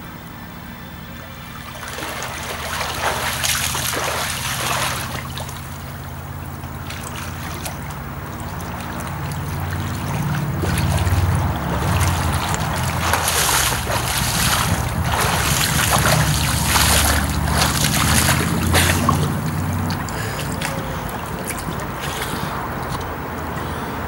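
A swimmer doing front crawl, arms and kicks splashing the water in irregular bursts that grow louder as he comes closer, loudest in the second half, over a steady low rumble.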